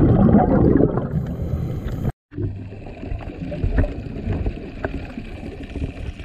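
Underwater recording: a rushing, bubbling water noise, loudest in the first two seconds. It cuts out briefly about two seconds in, then goes on quieter with a low rumble.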